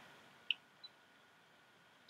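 Near silence, with one brief, faint high blip about half a second in.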